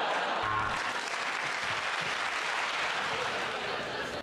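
Studio audience applauding steadily after a punchline.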